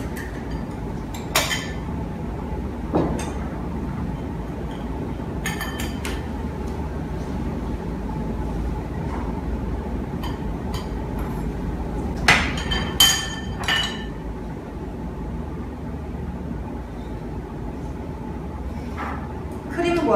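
Scattered light clinks of chopsticks against a glass bowl and a metal mesh sieve as beaten egg is whisked and then strained. A cluster of sharper, briefly ringing clinks comes past the middle, over a steady low background hum.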